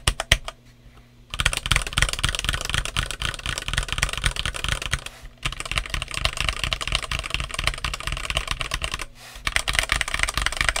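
Redragon K596 Vishnu TKL mechanical keyboard with Redragon Red switches and OEM-profile PBT keycaps being typed on fast: a dense run of keystrokes, broken by short pauses about a second in, about halfway and near the end.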